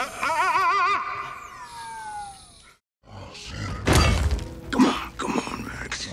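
Film sound effects: a warbling electronic tone that then slides down in pitch and fades out. After a moment of silence comes a run of loud crashing and breaking debris sounds with a deep rumble.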